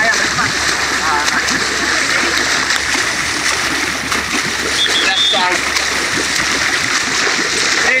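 Continuous rushing and splashing water from a swimmer's front-crawl strokes and the sea along the side of a moving support boat, over a steady low hum. Brief voices call out now and then, and a short high tone sounds about five seconds in.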